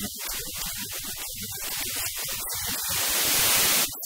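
Loud hiss like radio static that keeps breaking into short gaps and grows a little louder near the end.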